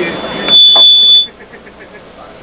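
Audio feedback squeal from a PA or amplifier: one loud, steady, high-pitched tone that starts about half a second in and cuts off after under a second.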